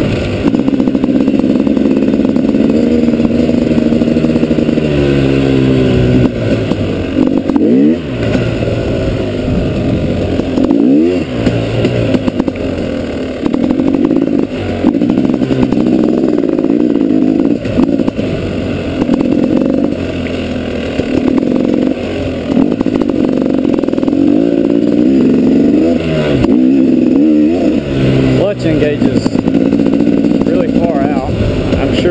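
2012 KTM 250 XCW's two-stroke single-cylinder engine being ridden on a trail, its revs repeatedly rising and falling as the throttle is worked. The revs dip sharply and climb back twice, about eight and eleven seconds in.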